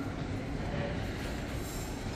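A steady low rumbling noise with no distinct events.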